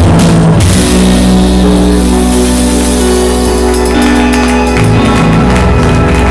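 Live rock band with drums, bass, guitar and keyboard: the drums stop about half a second in, the band holds a long chord, and the drums and cymbals come back in near the end. The recording is loud and distorted.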